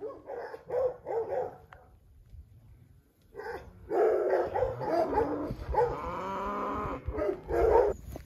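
Animal calls: a few short calls in the first two seconds, then after a pause a long run of drawn-out, wavering calls.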